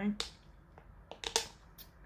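A person sipping an iced drink through a plastic straw: a few short, soft mouth and cup clicks spread through a quiet pause.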